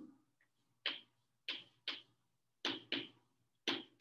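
Chalk writing on a blackboard: about six short, sharp taps at irregular intervals as the strokes hit the board.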